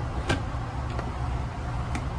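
Steady low rumble inside an Amtrak passenger car, with three short clicks as a hand handles and slides a plastic seatback tray table. The sharpest click comes about a third of a second in.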